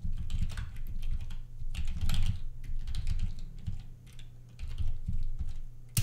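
Computer keyboard typing: a quick run of keystrokes with a short pause in the middle, ending in one louder keystroke.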